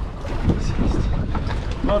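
Wind rumbling on the microphone aboard a drifting boat, with a few short knocks about half a second in.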